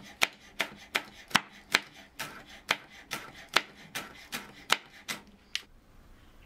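Chef's knife chopping green onion on a cutting board: about fourteen sharp, even knocks of the blade hitting the board, roughly two and a half a second, stopping shortly before the end.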